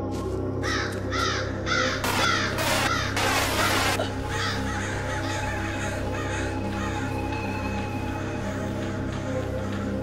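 A flock of crows cawing in many overlapping calls, densest and loudest in the first four seconds and thinning out after, over a steady, low, ominous music drone.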